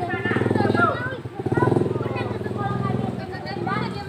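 Several people's voices talking and calling outdoors, over a steady low engine-like hum that fades near the end.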